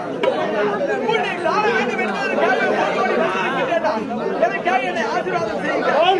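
Several voices talking at once, overlapping one another without a break.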